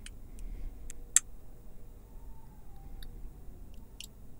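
Mouth clicks isolated from a sung vocal recording by iZotope RX's Mouth De-click in clicks-only preview: a sparse, irregular scatter of small sharp clicks, the loudest just over a second in, over a faint low residue. These are the clicks that the de-click process is about to strip from the vocal.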